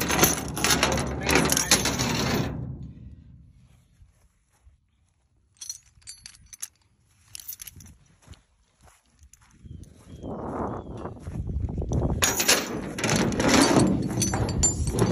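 Handling noise of tie-down gear, with rustling and light metallic clinks of the strap's chain and hooks. It is loud at the start, drops to a quiet stretch in the middle with a few scattered clicks, and builds up loud again near the end.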